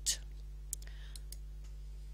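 A few faint, sharp computer mouse clicks about a second in as the Delete button on a web page is clicked, over a steady low electrical hum. The end of a spoken word is heard at the very start.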